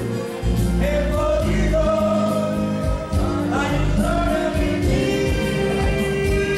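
A man singing karaoke into a handheld microphone over a recorded backing track, holding long notes that bend in pitch.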